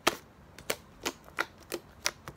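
Slime being squeezed and kneaded by hand, giving about five sharp, wet clicks and pops spread unevenly through the moment.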